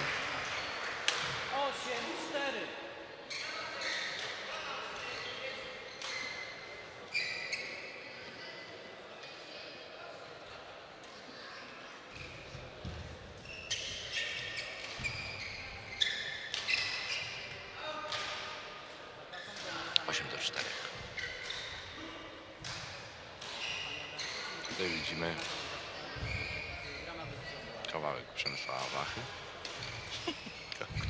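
Echoing sports-hall ambience during badminton play: scattered sharp hits of rackets on shuttlecocks from the courts, mixed with voices around the hall.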